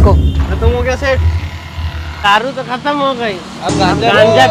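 Men's voices talking indistinctly over a low rumble that fades out about two and a half seconds in.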